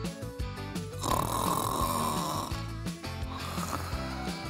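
Cartoon snoring sound effect: one long snore starting about a second in, over light background music.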